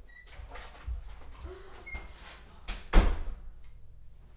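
Soft footsteps on a hallway floor, then a sharp, loud click of a door latch about three seconds in as an interior door is opened.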